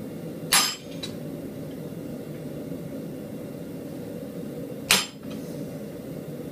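Two sharp hand-hammer blows on steel clamped in a vise, about four and a half seconds apart, each with a brief metallic ring, as the mouth of a forged animal head is pushed into shape. A steady low hum runs underneath.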